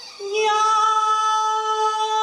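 A man's voice singing one long high note, coming in about a quarter of a second in after a short gap and held steady, with a slight wavering near the end.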